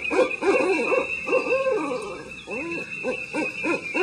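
Owl hooting, a run of short rising-and-falling hoots over a steady high tone, starting abruptly.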